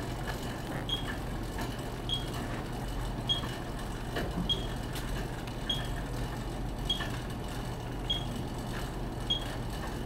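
A short high beep repeating evenly about once every 1.2 seconds, a metronome pacing the 50 rpm pedal cadence on a Monark cycle ergometer. It sits over a steady low hum, with a few faint clicks.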